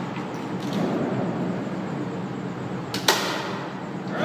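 Feed tray cover of a belt-fed machine gun being shut on a linked ammunition belt: one sharp metallic clack about three seconds in, over a steady hum.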